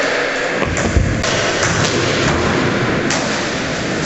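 Skateboard wheels rolling on a concrete skatepark floor in a large echoing hall, with a heavy thud about a second in and several sharp clacks.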